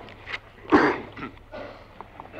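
A single loud cough about three-quarters of a second in, over a steady low mains hum in the old recording.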